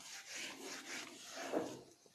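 Whiteboard duster rubbed across a whiteboard in repeated back-and-forth strokes, wiping off marker writing, with a brief louder sound about one and a half seconds in.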